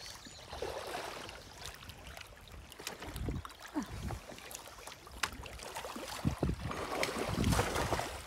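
Wind buffeting the microphone over water lapping against the rocks, with scattered knocks of handling; near the end a pike hooked on rod and line splashes and thrashes at the surface.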